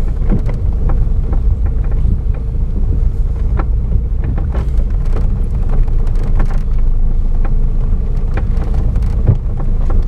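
Car cabin noise while driving slowly over a broken, rough road: a steady low rumble from the engine and tyres, with frequent short knocks and rattles as the car goes over the bumps.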